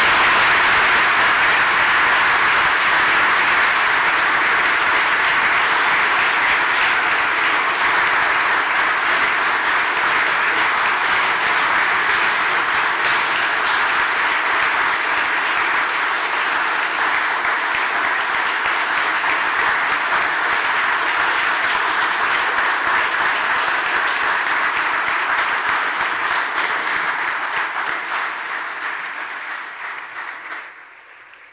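A large audience applauding, a dense steady clapping that goes on for about half a minute and tapers off near the end.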